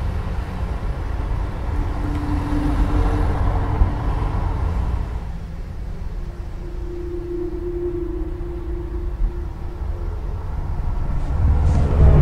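Steady low rumble of vehicle or street ambience, with a faint humming tone held for a few seconds twice, swelling in loudness just before the end.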